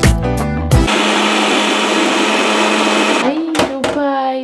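A single-serve blender running, its motor giving a steady whirr as it blends strawberries, blueberries, oats and yoghurt into a smoothie. It starts about a second in and stops suddenly shortly before the end.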